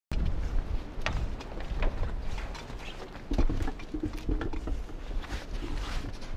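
A dog moving about close by: scattered short scuffs and clicks over a steady low rumble, with a faint pitched sound about halfway through.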